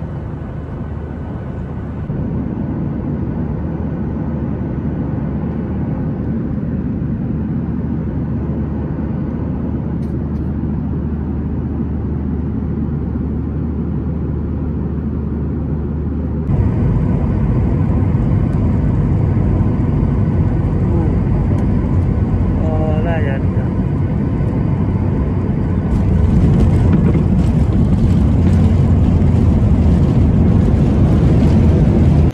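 Steady low roar of a flydubai Boeing 737's engines and airflow heard inside the passenger cabin. Near the end it gets louder, with rumbling and rattling as the jet rolls down the runway after landing.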